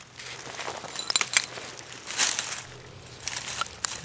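Hands digging through loose soil, roots and dry leaf litter to free a buried glass bottle: scraping and rustling with crackles, and a quick cluster of sharp clicks about a second in.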